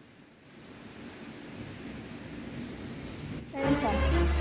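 Heavy rain heard from indoors, a steady hiss that slowly grows louder. Music with a deep bass starts shortly before the end.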